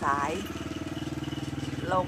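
An engine running steadily at a low, even pitch, with no revving.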